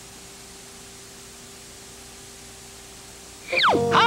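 Steady VHS tape hiss with a faint low hum in the blank gap between commercials. Near the end, the next commercial's music cuts in with a falling glide and wavering tones.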